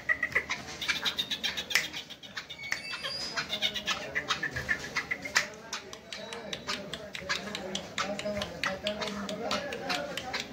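Caged black francolin calling: short high-pitched notes in the first half, one rising near the middle, among many sharp clicks and taps.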